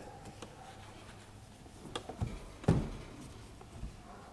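Paper towel wiping the top edge of a van's door window glass, a faint rubbing with a few soft knocks about two seconds in, the loudest just before three seconds.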